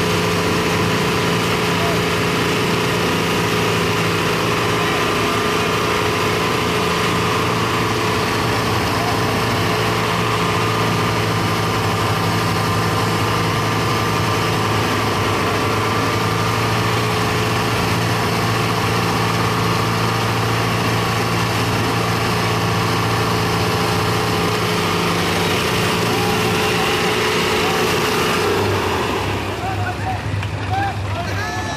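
Two diesel tractors, a Mahindra 575 and a Farmtrac, running hard at high throttle as they pull against each other in a tug of war. The loud engine note holds steady, then drops near the end.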